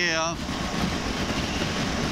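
BMW R1200GS motorcycle being ridden at road speed: a steady rush of wind and road noise on the mic, with no distinct engine note. A last spoken word ends just at the start.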